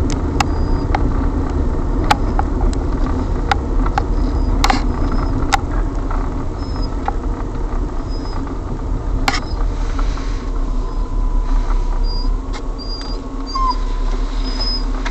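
Car driving, heard from inside the cabin: a steady low rumble of engine and road noise, with scattered irregular clicks and knocks. A faint thin whistle comes in about ten seconds in and fades near the end.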